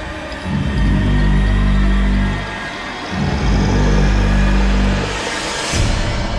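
Suspenseful film score: two long, low droning notes with a pause between them, then a rising whoosh that swells near the end.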